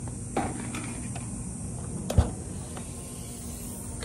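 Outdoor ambience: a steady high-pitched hiss, with a light knock about half a second in and a sharper, louder knock about two seconds in.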